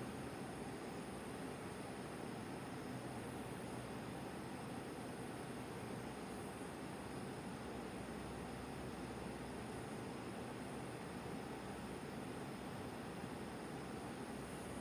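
Bunsen burner flame burning with a steady, even hiss.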